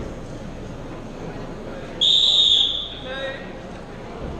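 A referee's whistle blown once, a single loud, high blast of just under a second, about halfway through. It is the kickoff signal for the second half, which the robot players listen for to start play. A murmuring crowd in a large hall is heard throughout.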